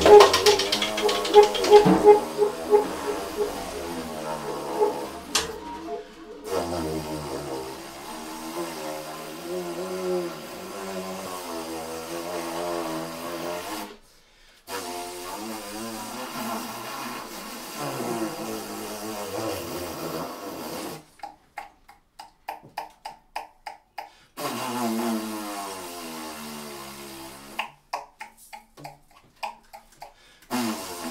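Saxophone playing quiet, wavering tones that slide up and down in pitch, after the drums die away in the first couple of seconds. The line breaks off briefly twice and turns into a run of short stuttering notes about two thirds of the way through.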